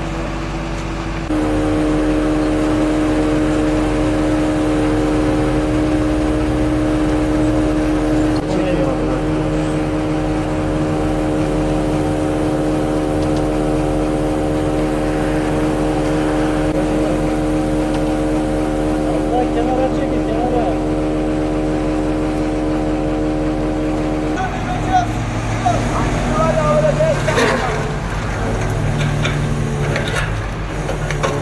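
Engine of a truck-mounted recovery crane running at a steady raised speed to power the crane as it lifts a wrecked car. It steps up abruptly about a second in and drops back about 24 seconds in, with voices in the background.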